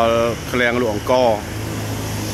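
A person speaking for about the first second and a half, then a steady low hum carries on beneath.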